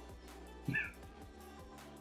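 Faint background music with a brief high chirp and a soft low thump about two-thirds of a second in.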